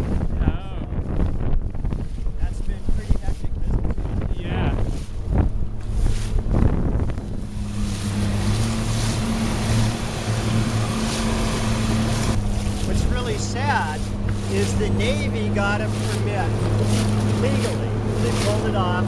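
Wind buffeting the microphone over the rush of water against a moving inflatable boat; from about seven or eight seconds in, the boat's motor comes through as a steady hum at an even pitch.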